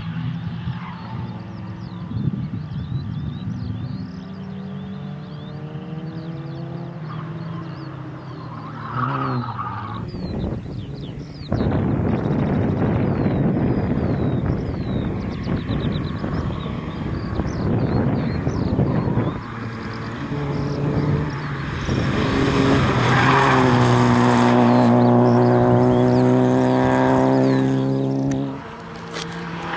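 Peugeot 106 XSi's four-cylinder petrol engine driven hard, revving up and dropping back again and again as it goes up through the gears and lifts for corners. It is loudest near the end, where it holds a high, steady note.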